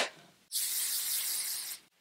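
Aerosol can of hairspray spraying in one steady hiss lasting just over a second.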